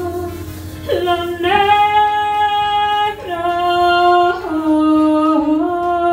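A woman singing into a microphone in a small room: a slow line of long held notes that step up and down in pitch, starting about a second in.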